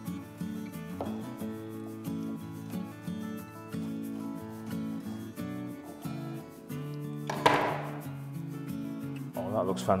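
A kitchen knife cutting through a baked quiche and its shortcrust pastry onto a plastic chopping board, with one sharp cut about seven and a half seconds in, under instrumental background music.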